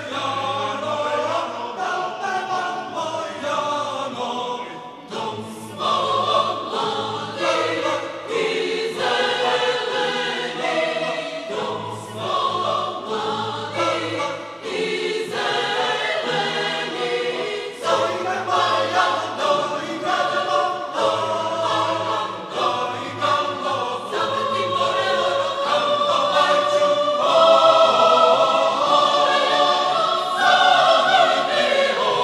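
Choir singing a choral arrangement of a Serbian folk dance (oro) in short, rhythmic phrases, growing louder near the end.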